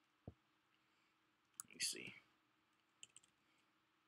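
Near silence broken by a soft low thump about a quarter second in and a few faint computer keyboard clicks near the end, the start of typing.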